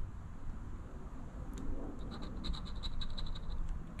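A coin scraping the coating off a scratch-off lottery ticket, in a run of quick short strokes that is clearest in the second half.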